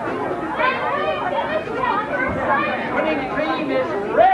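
Several people talking at once: overlapping, indistinct chatter with no single voice clear.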